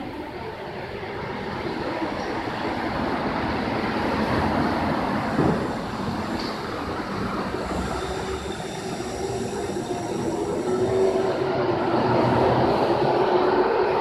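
A subway train running through the station: a rumble that builds over the first few seconds, eases briefly, then swells again, with a faint steady whine coming in partway through.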